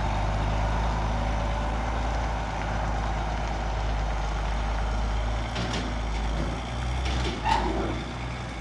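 Diesel semi-truck engine running steadily as the tractor pulls a lowboy trailer loaded with an excavator away down the street, with a brief higher-pitched sound near the end.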